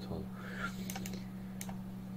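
A few sharp clicks from a computer's keys or mouse, a pair about a second in and one more a little later, over a steady low electrical hum.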